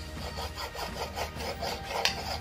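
Cleaver blade cutting through a thin, tenderised slice of pork on a hard cutting board: a quick run of light, even strokes, the blade scraping and tapping the board.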